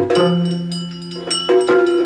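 Yakshagana musical accompaniment with no singing: small hand cymbals (tala) struck several times in rhythm and left ringing, with drum strokes, over a steady drone.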